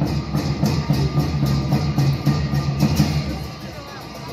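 Tibetan opera (lhamo) accompaniment of drum and clashing cymbals playing a quick, steady beat for the masked dancers.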